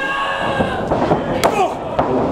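A voice shouting in a long drawn-out yell, then a single sharp smack about a second and a half in, a wrestler's strike landing.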